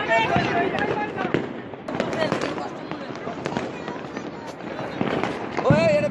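Fireworks and firecrackers going off repeatedly, a scatter of sharp pops and bangs throughout, with people's raised voices near the start and again near the end.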